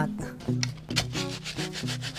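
Wooden paddle stirring and scraping dry rice and sugar around a metal cooking pot, a quick run of gritty scraping strokes, while the dry ingredients for kalamay are mixed.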